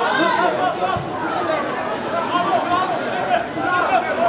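Several people's voices calling out and chattering at once, with no words clear enough to make out.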